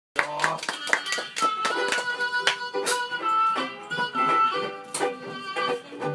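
Jug band playing live: strummed banjo ukulele and archtop guitar keep a steady rhythm under a held melody line.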